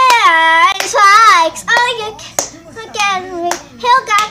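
A young girl singing unaccompanied, with long held notes, and a few sharp claps in between.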